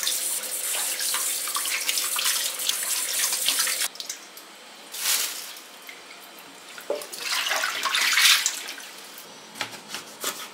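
Kitchen tap running into a stainless steel sink while vegetables are rinsed under the stream; the flow stops abruptly about four seconds in. After it, a few short splashing, rubbing sounds in the wet sink.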